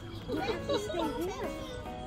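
High, sliding voices over steady background music.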